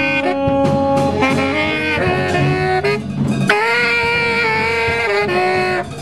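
Free jazz improvisation: a wind instrument plays sustained notes that step from pitch to pitch, with a long held note in the second half, over scattered percussive clicks.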